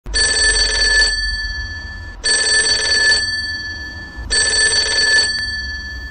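Public payphone ringing: three rings about two seconds apart, each a bell-like trill of about a second that rings on and fades before the next. The ringing stops as the handset is lifted.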